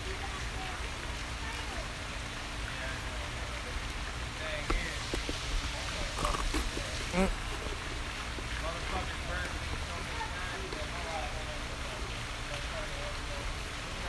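Steady outdoor background hiss, with a few faint brief sounds and soft clicks in the middle.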